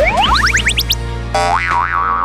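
Comic cartoon sound effects over background music: a quick run of rising whistle-like swoops, then about a second and a half in a wobbling boing that wavers up and down.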